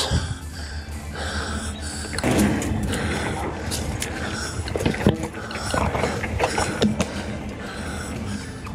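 Devinci Atlas Carbon RC mountain bike rolling fast down a dirt singletrack: steady tyre and wind rumble on the camera microphone, with several sharp rattles and knocks from the bike as it rides over roots, the loudest about five seconds in.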